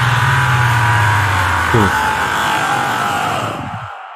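The closing seconds of a heavy modern metal track: a sustained, distorted low guitar chord under a layer of electronic noise. The low chord drops out with a quick downward pitch slide about two seconds in, and the rest fades out toward the end.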